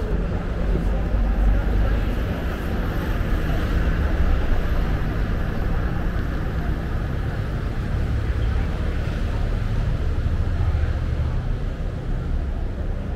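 Steady city street background: a low rumble of traffic with indistinct voices mixed in.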